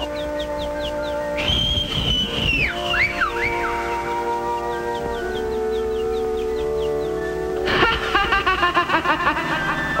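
Cartoon background score of held orchestral chords, with a high whistle-like tone that slides and falls about a second and a half in, and a run of short, high, falling chirps over the chords. Near the end a voice with a wavering pitch comes in over the music.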